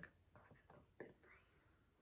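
Near silence: room tone with a few faint short sounds and a soft tick about a second in.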